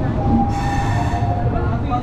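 Indian Railways passenger coach rolling along a station platform as it comes in: a steady low rumble of the running train, with a brief shrill tone about half a second in that lasts under a second.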